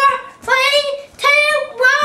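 A young girl singing short, high held notes in a steady rhythm, about four in two seconds, with no clear words.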